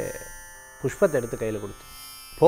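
A man talking in short phrases over a faint, steady buzzing hum in the background.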